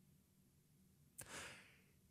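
Near silence in a pause in speech, broken about a second and a half in by a man's short, soft intake of breath before he speaks again.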